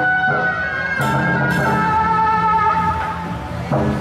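Loud procession music: a wind instrument plays a held melody that steps and wavers in pitch over drums and other percussion, with a crash about a second in.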